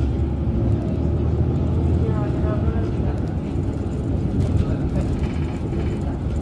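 Steady low rumble of a city bus's engine and tyres, heard from inside the moving bus, with faint voices in the background.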